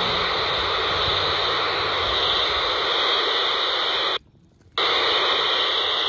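Steady static hiss from a handheld scanner's loudspeaker tuned to low-band VHF FM, with no transmission coming through. About four seconds in it cuts out for half a second, then comes back.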